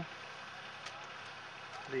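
Faint, steady background hiss with no distinct source, and one light tick a little before the middle.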